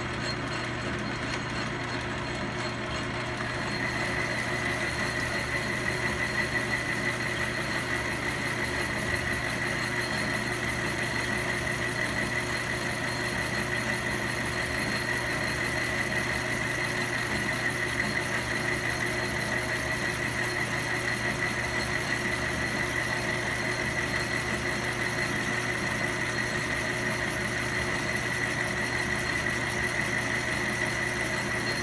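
Logan 10-inch metal lathe running, its spindle turning an aluminium workpiece while a high-speed-steel boring bar takes a finishing pass inside the bore. The machine runs steadily, and a steady high whine joins about four seconds in and holds.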